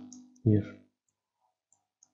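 A few faint computer mouse clicks against near silence.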